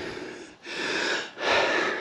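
A man's breathing close to the microphone: two long breaths, one after the other.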